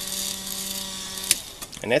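Electric motor of a Spinrite arrow-cresting machine spinning an arrow with a steady hum and hiss, then switched off with a click just past halfway, the hum stopping at once.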